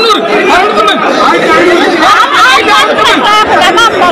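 Several people talking at once, loud overlapping chatter with no single voice standing out.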